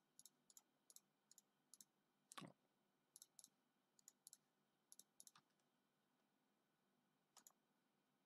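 Faint computer mouse clicks, a dozen or so at irregular intervals, with one slightly louder click about two and a half seconds in and a pause of about two seconds near the end.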